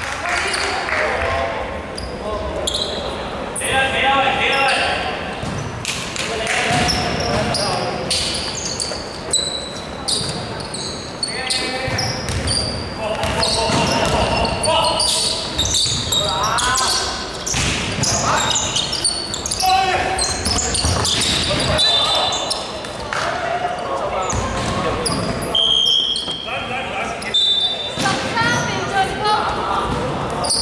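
Basketball game in an echoing sports hall: the ball bouncing on the hardwood floor, with players' voices calling out and short high squeaks from sneakers.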